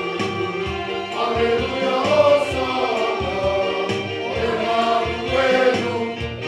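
Church choir of children and adults singing together in several voices.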